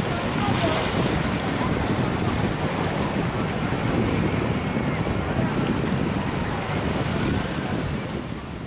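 Small sea waves washing in and breaking over low rocks, with wind buffeting the microphone.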